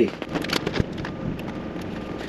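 Paper sticker sheets being handled: a few light rustles and clicks and one sharper tap in the first second, over a steady background hiss.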